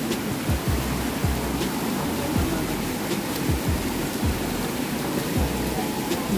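Steady rush of a rocky mountain stream flowing over stones, with irregular low thumps from a handheld camera jostling as its holder walks.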